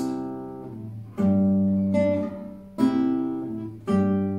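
Acoustic guitar played alone: chords and notes plucked every second or so and left to ring, each fading before the next is struck.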